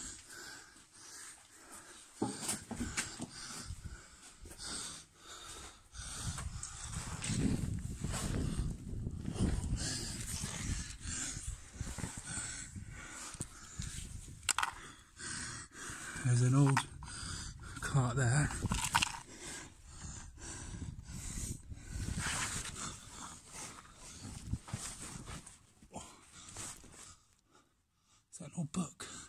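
A man's heavy panting and grunts as he scrambles over a pile of rubble, with irregular scrapes and knocks of loose stones and handling noise. There are a couple of short, louder grunts just past the middle.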